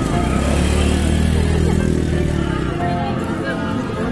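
A motorcycle engine running close by: a steady low drone that drops away about two and a half seconds in.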